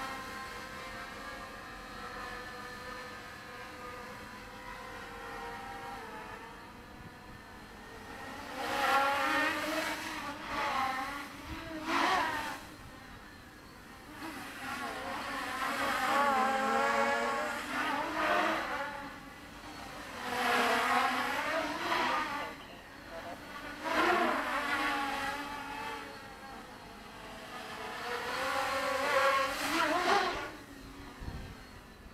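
Quadcopter's four Avroto 770kv brushless motors and propellers whining on a 4S battery, the pitch rising and falling as the throttle changes. There are several loud surges where the pitch climbs sharply, between quieter steadier hovering stretches.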